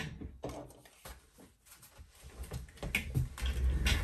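Light taps and rustles of paper and small craft supplies being handled on a table, with a low rumbling bump near the end.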